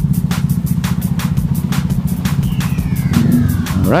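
Kawasaki Bajaj Dominar 400's single-cylinder engine idling steadily while being warmed up.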